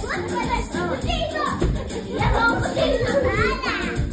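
Young children shouting and squealing over music, with one high rising-and-falling squeal near the end.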